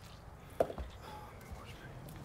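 A single short knock about half a second in, over faint background noise.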